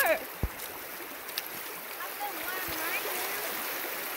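Shallow stream running over stones, a steady rush of flowing water. There is a single dull knock about half a second in.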